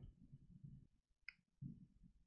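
Near silence broken by a single sharp click about a second and a quarter in: a mouse button clicked on the Windows setup's Install now button.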